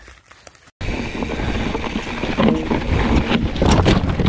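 Wind buffeting the microphone of a rider-mounted camera on a mountain bike moving fast, with the bike knocking and rattling over the wooden slats of a boardwalk trail. It cuts in suddenly under a second in, after a short quiet stretch.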